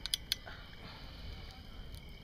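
Three quick small clicks in the first half second, from a lighter being levered against a beer bottle's metal cap; afterwards only a low background hush.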